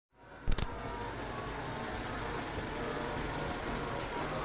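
Film projector sound effect: a sharp clatter about half a second in, then a steady whirring rattle of the running projector.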